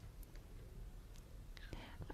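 Quiet studio room tone with a few faint clicks.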